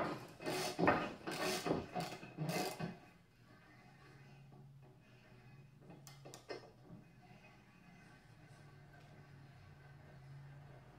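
A hand tap cutting threads in a steel plate, turned by hand: a quick series of rasping, scraping strokes for about three seconds, then much quieter with a couple of faint clicks about six seconds in.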